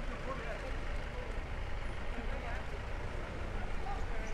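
Indistinct background voices of people talking while walking along a street, over a steady low rumble of street noise.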